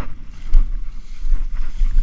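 Wind buffeting a camera microphone, a heavy uneven low rumble, with rustling of tall dry grass as someone walks through it.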